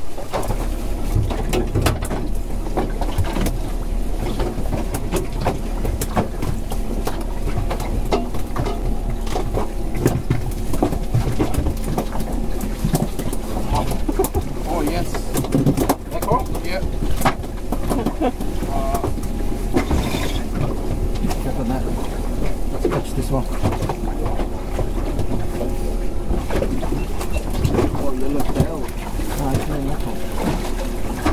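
Steady wind and water noise around a small open aluminium boat on choppy water, with scattered knocks and clicks throughout.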